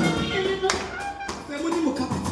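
Live church music with a voice through a microphone, punctuated by sharp percussive taps about every two-thirds of a second.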